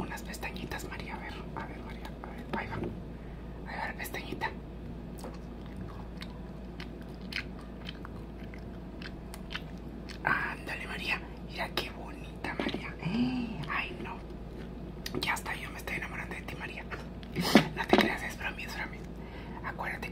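Close-up mouth sounds, wet clicks and chewing-like smacks, scattered through, with a few short stretches of quiet muttered or whispered voice, the loudest just before the end.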